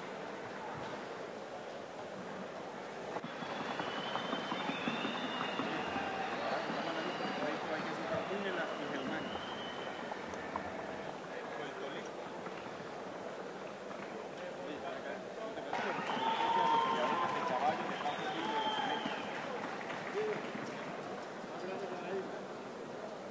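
A Paso Fino horse's hooves beating a rapid, even clatter on a wooden sounding board, the gait's fast four-beat footfall, with crowd voices behind.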